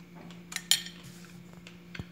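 Small metal teaspoon set down on a plate: two quick clinks about half a second in, the second louder and ringing briefly, then a lighter tap near the end.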